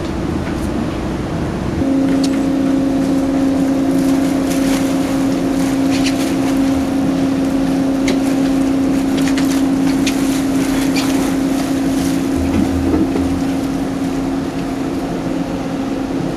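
Research ship's deck machinery giving a steady hum that comes in suddenly about two seconds in and fades near the end, over steady wind on the microphone and sea noise, with scattered light clicks, as a CTD rosette is lowered into the sea.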